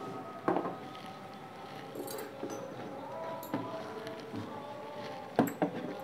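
A hand mixing spice powder into raw chicken pieces in a bowl, with a few soft knocks against the bowl, over faint steady tones in the background.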